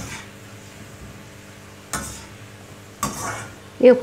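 Steel perforated skimmer knocking and scraping against an iron kadhai three times, about a second apart, while stirring bitter gourd slices deep-frying in hot oil, with a low sizzle underneath.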